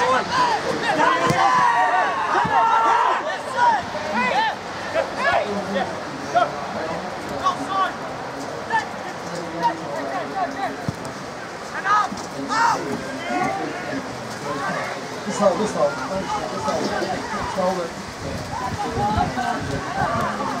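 Scattered shouts and calls from footballers and spectators, too distant to make out words. They are loudest and most crowded in the first three or four seconds.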